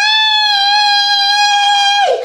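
A girl's loud, high-pitched scream, held as one long note at a steady pitch.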